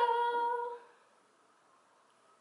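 A woman's voice holding a sung 'ta-da' note at one steady pitch, cutting off before a second in.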